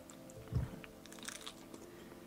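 A bite into a piece of fried chicken about half a second in, then quiet chewing with small crunches.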